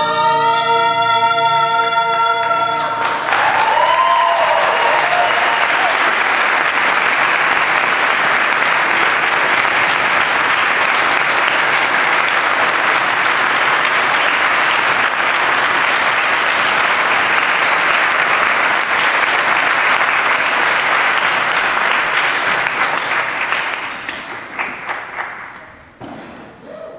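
A male and female vocal duet holding its final note, which ends about three seconds in; then a congregation applauds, with a short shout from the audience about four seconds in, and the clapping thins out and dies away near the end.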